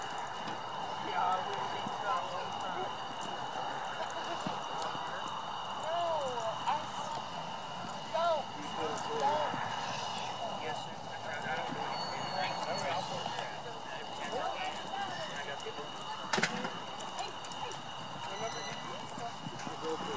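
Horses' hooves on a soft dirt arena floor as they lope and turn, with indistinct voices and calls throughout and a steady high tone behind. One sharp knock stands out about three-quarters of the way through.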